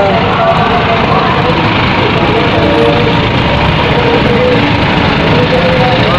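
Loud, steady din of a crowded street, with vehicle noise and voices talking in the background.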